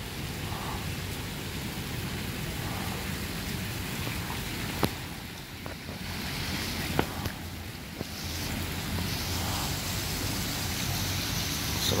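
Steady splashing of small water spouts pouring from a wall into a swimming pool, with a low hum underneath. There are two short sharp clicks, about five and seven seconds in.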